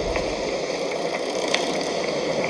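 Steady rushing of sea and wind around a wooden ship, with a dull low thump right at the start and a few faint clicks.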